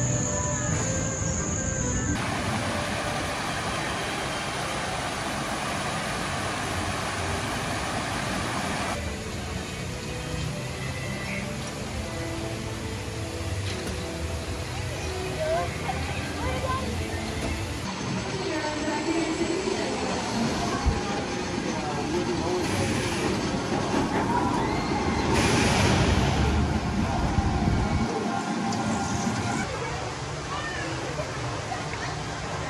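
Theme park ambience in a run of short clips: indistinct voices and crowd chatter with music in the background, and a ride's cars rolling on their track.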